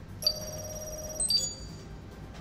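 A bright, bell-like electronic chime that starts suddenly and holds for about a second, followed straight after by a second, shorter tone.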